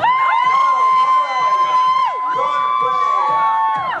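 A crowd cheering and shouting, with long held high-pitched screams of about two seconds each, overlapping one another.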